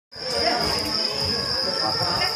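A steady, high-pitched drone of crickets, with people's voices murmuring underneath.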